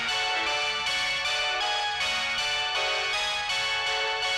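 Electronic keyboard and synthesizer music: a repeating pattern of sustained notes changing about every half second.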